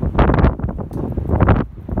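Wind buffeting the microphone in gusts, a loud low rumble that eases briefly near the end.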